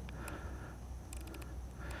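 Faint run of quick clicks as the control dial of an Olympus mirrorless camera is turned, stepping the shutter speed down to 10 seconds, over a low room hum.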